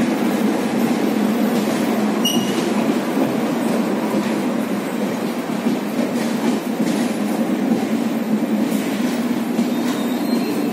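Express train's passenger coaches running through a station without stopping: a steady, dense rumble and rattle of wheels on rail. About two seconds in there is one brief high-pitched squeal.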